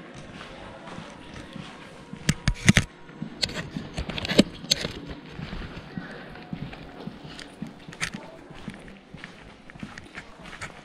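Footsteps on a hard floor, with a cluster of sharp knocks, the loudest sounds, about two and a half seconds in and another knock a couple of seconds later.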